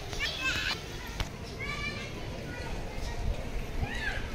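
Children's voices calling in short high-pitched bursts, three times, over a steady low street rumble, with a single sharp click about a second in.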